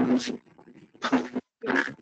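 A man laughing in short bursts.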